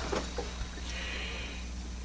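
Quiet handling of a small geared motor and an aluminium tube, with a few faint light knocks early on, over a steady low hum.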